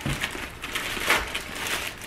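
Plastic mailer bag being ripped open by hand: crinkling and tearing in several short bursts, the loudest a little past halfway.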